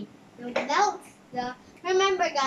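A young girl's voice: three short vocal phrases, the last running on past the end.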